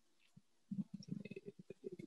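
A pause in speech: near silence, then from under a second in a faint, choppy low murmur of a man's voice breaking up over a video-call connection.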